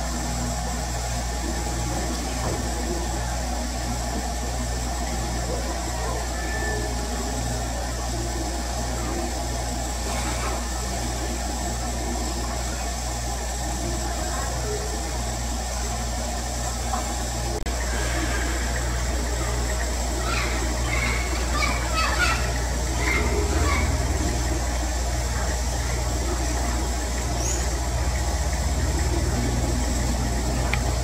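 A steady low machine hum that pulses on and off a little faster than once a second. A cluster of short, higher-pitched calls comes in about two-thirds of the way through.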